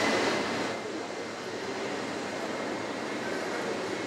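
Steady rushing background noise of a large airport terminal hall, loudest in the first second, with no voices standing out.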